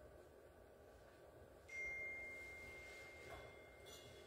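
A single high bell-like note, struck about two seconds in and ringing as it slowly fades, followed by a faint click near the end.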